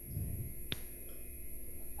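Quiet room tone from the stage microphone, a steady faint background with one sharp short click a little under a second in.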